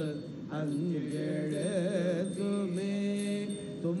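Hindu priests chanting Sanskrit mantras in a melodic, sung recitation over a steady drone.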